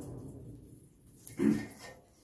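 The rushing air noise of a forge fire under blast fades away, then a short grunt or hum from the smith about a second and a half in.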